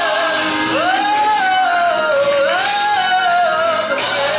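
Gospel choir singing, with one strong voice holding long notes with vibrato that swoop upward about a second in and again halfway through.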